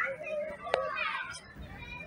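Children's high voices chattering and calling, with one sharp click about three-quarters of a second in.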